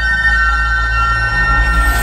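Background drama score: a sustained drone of steady high tones over a deep low hum, with a swelling whoosh starting near the end.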